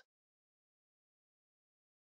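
Near silence: a gated pause in the narration with no audible sound.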